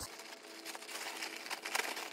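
Plastic mailer bag rustling and crinkling faintly as it is handled and opened, with small crackles that pick up about a second in.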